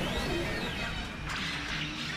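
Animated-series battle soundtrack: music under action sound effects, with a whooshing glide near the start and a crashing burst of noise about one and a half seconds in.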